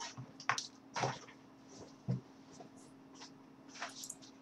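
Faint, scattered knocks and rustles, about four of them, as a person gets up from a desk and moves away from the microphone, over a steady low hum.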